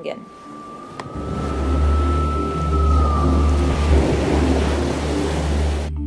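Outdoor shoreline sound: surf washing onto a sand beach, with a strong low rumble of wind on the microphone from about a second in. Soft background music runs underneath.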